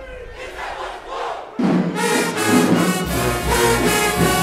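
A crowd shouting, then about a second and a half in a marching band's brass section comes in loud and sudden, with low bass notes joining near the end.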